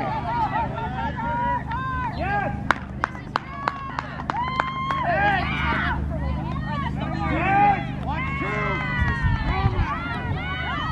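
Many kids' voices chattering and calling over one another, over a steady low hum, with scattered sharp clicks.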